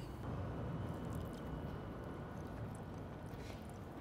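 Faint squishing of a juicy smoked chicken thigh being pulled apart by hand and bitten into, over a low steady hum.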